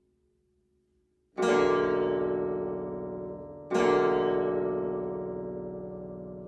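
Bass zither playing two loud plucked chords, one about a second and a half in and another near four seconds, each ringing on and slowly dying away. The first second is almost silent.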